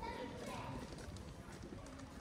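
Footsteps clicking on stone paving, with passers-by talking.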